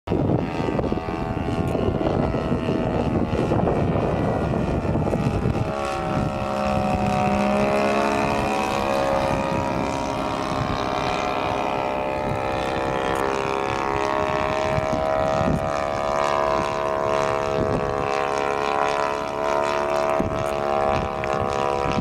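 Radio-controlled Piper L-4 Grasshopper scale model's DLE 30 single-cylinder two-stroke gasoline engine and propeller droning in flight. The sound is rough and noisy for the first several seconds, then settles into a steady buzzing tone that drifts only a little in pitch.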